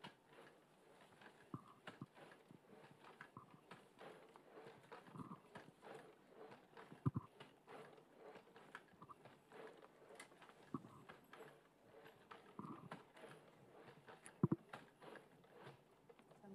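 Wandercraft exoskeleton walking: faint, irregular knocks and clicks of its footsteps, with a few louder knocks about seven and fourteen and a half seconds in.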